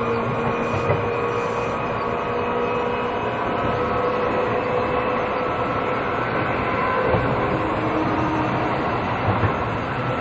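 Seibu New 2000 series electric train running, heard from inside the car: steady wheel and rail noise with the even whine of its chopper-controlled traction motors.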